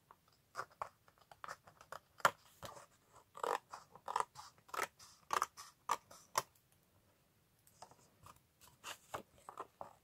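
Scissors snipping through thick, double-layered cardstock to trim the excess from a card's edge: a run of separate cuts, one or two a second, with a pause of about a second before a few more near the end.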